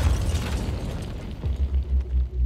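News-channel ident sound design: a sudden deep impact sound that fades over about a second and a half, then a pulsing low bass begins.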